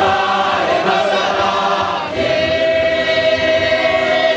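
A large congregation singing together. A long held note begins about halfway through.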